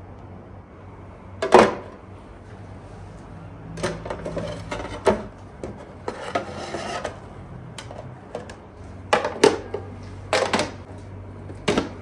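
Knocks and clatters of a kitchen knife and peeled watermelon pieces against an aluminium tray and clear plastic storage boxes as the cut fruit is packed, the sharpest knock about a second and a half in.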